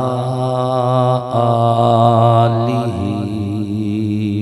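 A man's voice chanting a melodic religious recitation into a microphone, holding long drawn-out notes with a wavering pitch and pausing briefly about a second in.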